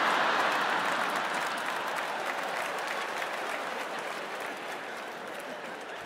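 Live audience applauding a stand-up punchline, loudest at the start and slowly dying away.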